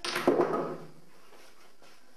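Wooden table skittles clattering as the swinging ball knocks several of them down: a burst of knocks lasting under a second, near the start.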